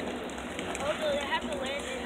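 Faint, indistinct speech from a distant announcer over steady background noise; no words come through clearly.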